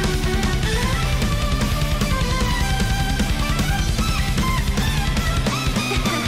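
A symphonic rock/metal song playing, with rapid bass-drum hits, distorted guitar and bass, and a held, wavering lead melody above them. The heavy low end drops out briefly near the end.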